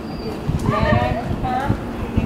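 Voices talking in the background, not close to the microphone, over a run of short low knocks that fit footsteps as the person filming walks along the path.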